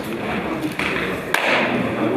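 Indistinct murmuring voices in a hall, mixed with scattered taps and knocks, and one sharp click about one and a half seconds in.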